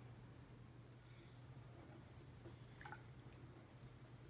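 Near silence: room tone with a low steady hum and one faint click about three seconds in.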